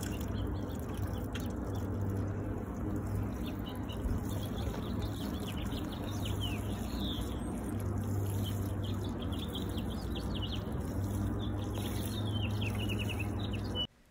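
Water sprinkling from a plastic watering can's rose onto garden soil, a steady soft hiss, with small birds chirping repeatedly in the background. The sound cuts off suddenly just before the end.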